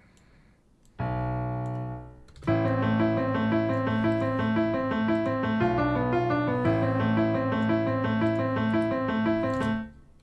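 Addictive Keys studio grand piano playing from FL Studio: a single low bass note sounds about a second in and fades, then a looping minor-key piano melody of short repeated notes over a held bass note plays and cuts off just before the end.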